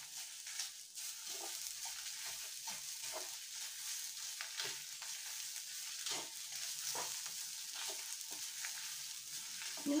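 Grated coconut with dried red chillies and curry leaves sizzling as it roasts in a pan, with a spatula stirring and scraping through it in short, irregular strokes over a steady hiss.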